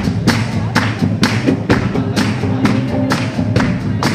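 Live rock band playing: the drums keep a steady beat of about two hits a second under electric guitar.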